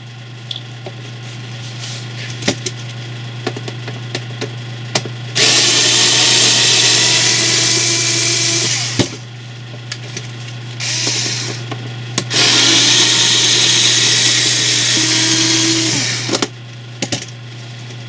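Cordless electric screwdriver running in bursts, backing screws out of a heated plastic headlight housing: two long runs of about four seconds each, with a short one between them.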